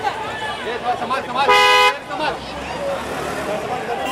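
A car horn gives one short honk, about a second and a half in, over a crowd of people talking.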